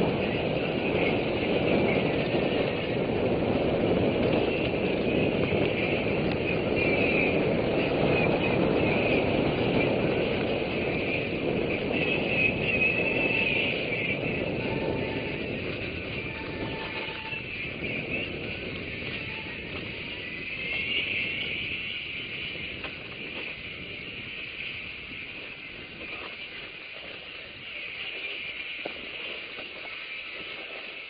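Wind rushing over the camera microphone and the rolling rumble of a mountain bike descending a dirt trail at speed; the noise eases off after about fifteen seconds.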